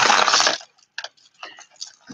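Strings of bead necklaces clattering as they are handled: a short burst of rattling clicks, then a few scattered single clicks.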